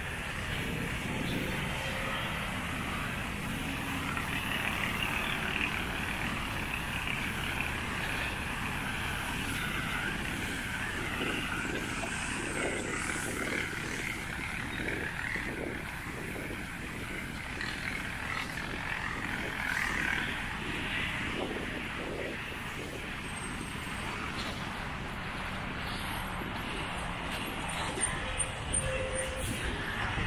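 Steady hum of road traffic from a nearby roadway, an unbroken rushing drone with no distinct single vehicle standing out.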